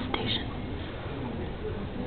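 A brief whisper at the start, then low background noise with faint murmuring voices.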